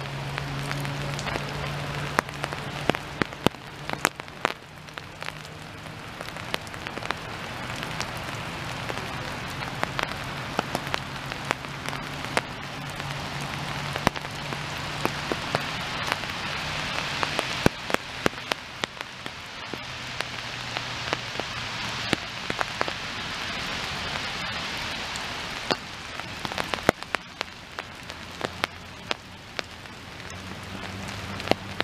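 Steady rain falling, with frequent sharp taps of drops landing close by.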